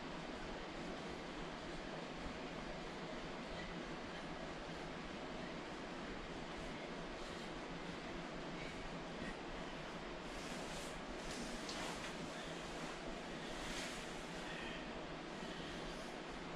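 Steady, even hiss of room noise, with a few brief rustles of a plastic sauna suit between about ten and fourteen seconds in as the wearer moves from the floor to standing.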